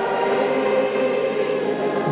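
Choral background music: a choir holding sustained notes.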